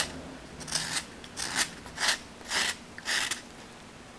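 An X-Acto blade in a homemade wooden handle slicing into a wood blank: a series of short cutting strokes, about one every half second, the last a little after three seconds in.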